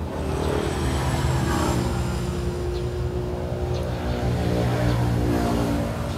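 A motor running with a steady droning hum, its pitch holding nearly constant after swelling slightly in the first second.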